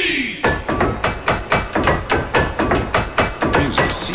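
Fast, even run of sharp percussive hits, about six a second, with short high blips among them: the percussion and sound effects of a TV commercial's soundtrack.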